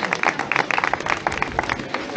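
Small crowd clapping, dense and irregular, thinning out near the end.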